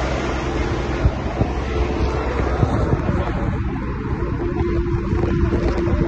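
A fire pumper truck's engine runs steadily, with a low hum and a steady whine, under a broad rushing noise that thins after about two seconds. A few sharp knocks come through.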